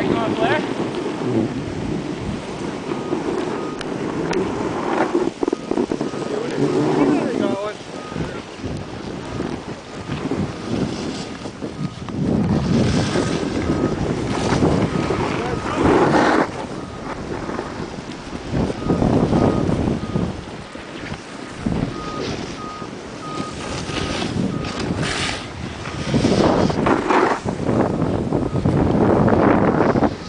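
Wind buffeting the microphone in uneven gusts, with indistinct voices beneath it. A faint, pulsing high beep sounds from near the start until a few seconds before the end.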